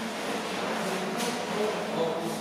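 Workshop room tone: a steady low hum over faint background noise, with light handling sounds from work on an inflatable boat's tube, including a brief rustle a little over a second in.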